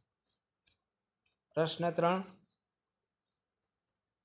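A few faint clicks and one short spoken phrase from the narrator, lasting under a second and starting about one and a half seconds in, with near silence around them.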